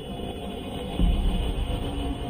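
Slow, dark ambient drone music with held tones, joined about a second in by a louder low rumble.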